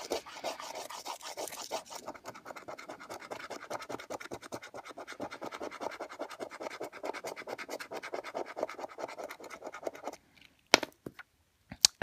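Scratchcard coating being scratched off in quick, steady strokes, several a second, stopping about ten seconds in. Two short sharp clicks follow near the end.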